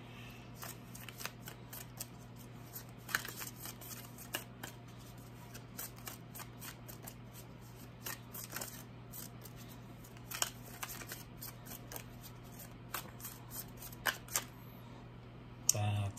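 A tarot deck being shuffled by hand: irregular soft clicks and slides of cards, with a low steady hum underneath.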